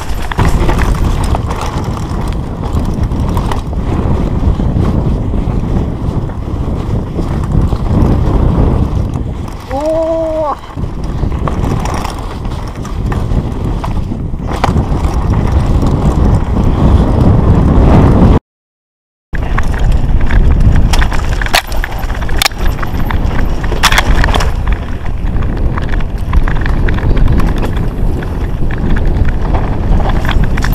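A mountain bike rolling fast down a dry dirt trail, heard on an action camera: loud wind buffeting on the microphone over the rattle and clatter of tyres, frame and chain on the rough ground. A brief pitched tone rises and falls about a third of the way in, and the sound cuts out completely for under a second a little past the middle.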